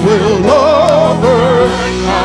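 Gospel choir and lead voices singing with a band, the leading voice holding wavering notes with heavy vibrato over steady held chords underneath.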